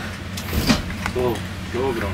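Steady low hum inside a lift car, with a short knock about half a second in.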